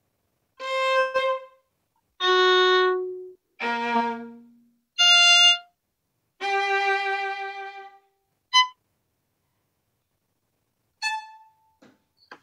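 Two violins trading single bowed notes in turn, improvising a phrase one note at a time. There are about seven notes at different pitches with short pauses between them, and the last two are brief.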